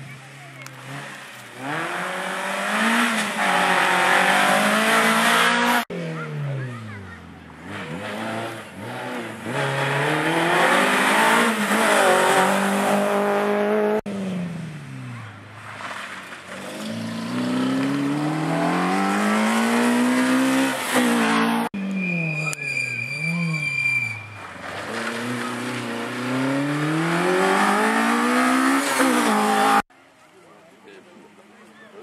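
Rally car engines revving hard as several cars, one after another, brake and accelerate through a corner, the engine pitch sweeping down and climbing again with each gear change. Around two-thirds of the way through comes a steady high squeal of about two seconds.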